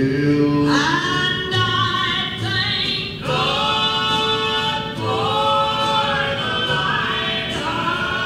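Gospel song sung by several voices in harmony, holding long notes.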